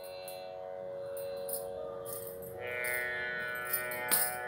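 Tanpura drone: a steady, sustained chord of strings with fresh plucks sounding every half second or so, growing fuller about two and a half seconds in.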